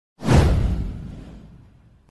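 A whoosh sound effect for an animated title intro, with a deep low rumble under it. It comes in suddenly a moment after the start, then fades out over about a second and a half.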